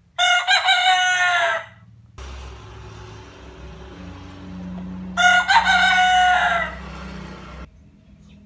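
White Leghorn rooster crowing twice, each crow about a second and a half long: one just after the start and one about five seconds in.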